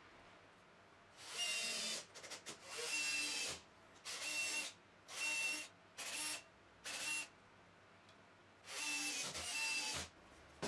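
Electric drill running in short bursts, seven trigger pulls of under a second each with a steady motor whine, boring holes into a plywood box corner with a countersink-type bit.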